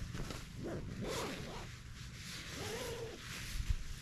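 Nylon tent fabric and gear rustling and rubbing as it is handled at the tent door, in irregular scuffing strokes with a low bump near the end.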